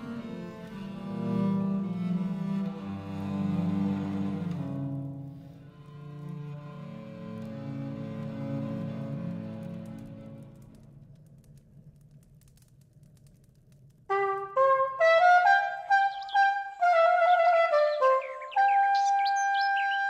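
Two bass viols (viole de gambe) play slow, sustained bowed chords that fade away about eleven seconds in. After a short near-silent pause, a cornett (curved wooden cornetto) comes in sharply about fourteen seconds in, playing a quick melodic line of detached notes.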